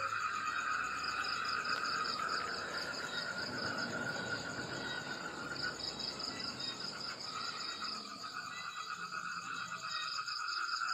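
Steady night chorus of crickets: shrill, fast-pulsing trills at several pitches, easing off a little in the second half.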